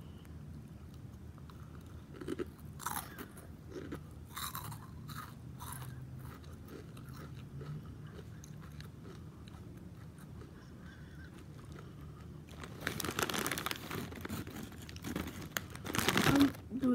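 Crunchy Funyuns onion-flavored corn snack rings being bitten and chewed close to the microphone: sharp crunches early on, quieter chewing in the middle, and a louder stretch of crackling near the end.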